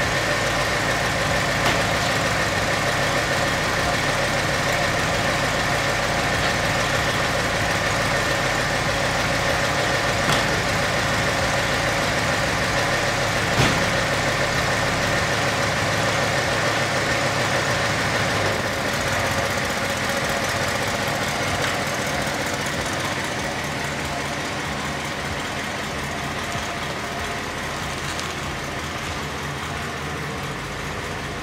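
1964 Mercury Montclair's Ford FE V8 running steadily, with a few brief clicks. The sound grows gradually fainter over the second half as the car pulls away.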